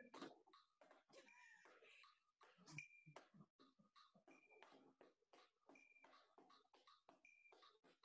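Very faint metronome ticking at 160 beats per minute, with an accented beep about every second and a half.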